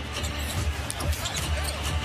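Basketball game sound from a hardwood court: short sharp knocks of the ball and players' shoes over a steady low arena background.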